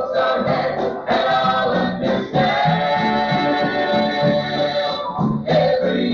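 Gospel group singing in harmony with instrumental accompaniment, with a long held chord in the middle, heard from an old cassette tape with a dull top end.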